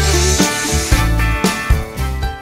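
Background music with guitar and drums and a steady beat.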